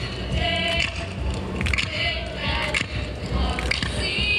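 A group of girls and young women singing together into microphones, their voices held on long sung notes over a low accompaniment.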